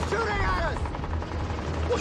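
Film battle soundtrack: gunfire with a helicopter's low steady rotor drone, and a man's shout in the first second.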